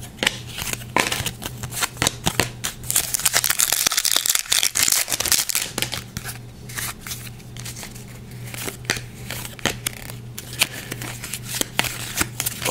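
Trading cards being handled and slid over one another in the hands, a quick run of small clicks and rustles that is busiest a few seconds in.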